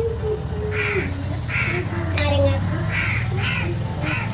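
A crow cawing four times, the last two calls close together.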